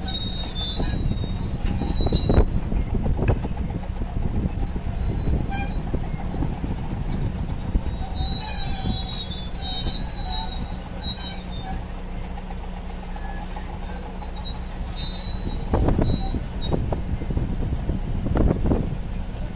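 Large crawler bulldozer's diesel engine running while its steel tracks squeal and clank as it creeps forward onto a lowboy trailer. High squeals come near the start, in the middle and near the end, with a few heavy clanks.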